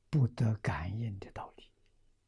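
An elderly man speaking a short phrase in Mandarin, which stops about a second and a half in.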